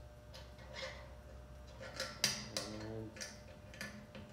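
Small metal clicks and taps as a candy thermometer's clip is fitted against the steel lid of a propane-tank smoker, several irregular ticks with the sharpest one a little past the middle.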